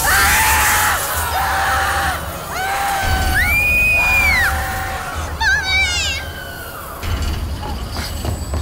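Several people screaming in terror, long held screams overlapping and trailing down in pitch, with a high trembling shriek about five and a half seconds in, over a low rumbling film score.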